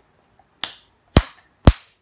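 A child's hand claps: three sharp claps, about half a second apart, the last two louder.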